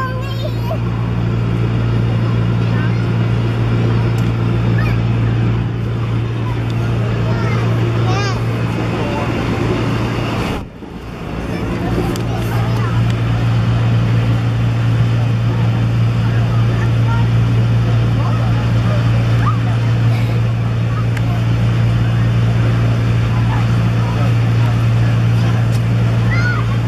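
Electric air blower keeping an inflatable slide inflated: a loud, steady low hum that dips sharply for a moment about ten seconds in, with voices in the background.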